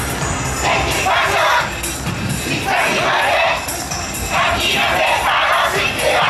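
A yosakoi dance team shouting in unison in repeated bursts, each about a second long, over loud recorded dance music.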